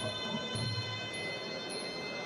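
Small ching hand cymbals ringing on a steady beat, struck a little under twice a second, their high tones hanging on between strikes, as in the Sarama music played for the Muay Thai wai kru.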